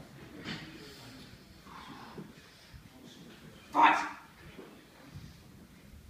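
One short, loud vocal call about four seconds in, over faint room sound.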